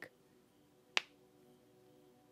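A single short, sharp click about a second in, like a finger snap, over faint steady tones in a quiet pause.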